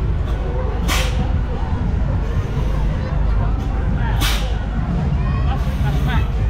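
Loud funfair noise: a steady low rumble of ride machinery with two short, sharp hisses about three seconds apart, under voices.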